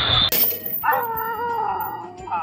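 A loud noisy burst cuts off just after the start, then a man gives one long, wavering, high-pitched cry of pain, like a howl, after falling from the basketball rim and hurting his leg.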